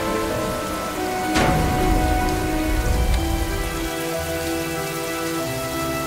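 Heavy rain pouring down, with sustained low notes of music underneath and one sharp hit about a second and a half in.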